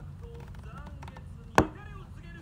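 Voiced dialogue from the subtitled Bleach episode playing, with one sharp knock about one and a half seconds in, the loudest sound here, over a low steady hum.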